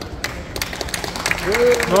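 Audience applause: scattered hand claps that thicken from about half a second in. Near the end a voice calls out a drawn-out "oh" that rises and then falls in pitch.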